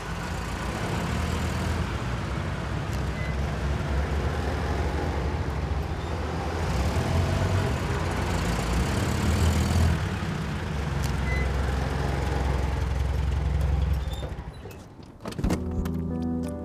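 Cars driving up with a steady low engine rumble that dies away near the end, followed by a single short click.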